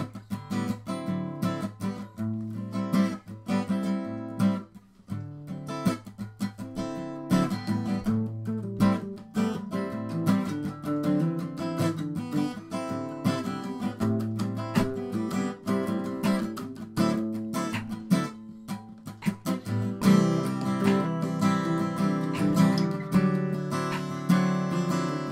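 Acoustic guitar music: plucked and strummed chords that grow fuller and louder about twenty seconds in.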